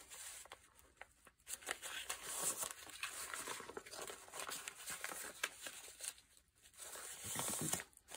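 Sheet of paper rustling and creasing as it is folded into thirds by hand and pressed flat, in faint irregular rustles.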